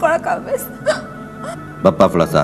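A woman's voice in short, tearful phrases over steady background music. A louder voice starts just before the end.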